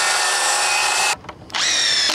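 Cordless circular saw cutting through a board for about a second and stopping, then, after a short pause, a cordless drill motor whirring with a slightly rising pitch.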